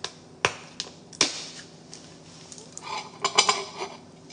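Sharp plastic clicks from the cap of a squeeze bottle of jelly being opened, one about half a second in and another just after a second. Near the end comes a short run of clattering knocks.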